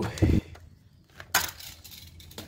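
A toy monster truck is handled and sent down the track: a short low thump near the start, then a single sharp plastic clack about a second and a half in.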